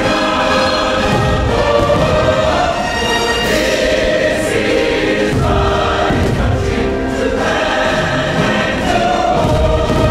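Choir singing over orchestral music from the fireworks show's soundtrack, with deep booms of fireworks bursting underneath a few times.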